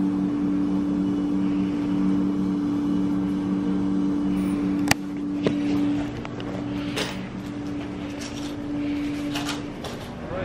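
A steady machine hum with two held low tones over background noise. It weakens in the second half and stops near the end, with a few sharp clicks in the second half.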